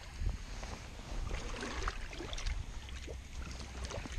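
Wind buffeting the microphone, with faint sloshing and small splashes of shallow pool water as a person wades through it.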